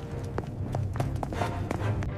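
Quick run of footstep sound effects, about four light taps a second, over steady background music.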